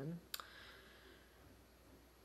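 A single sharp mouth click, a lip smack, followed by a short, faint breath in, then quiet room tone.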